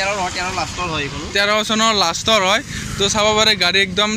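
A person speaking, with a steady low hum underneath.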